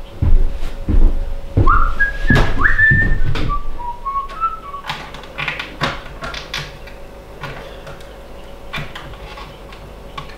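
A person whistling a short tune of several notes, starting high and stepping down in pitch, from about a second and a half in to about four and a half seconds. Scattered clicks and knocks of hands working in a ceiling light fixture run throughout, heavier near the start.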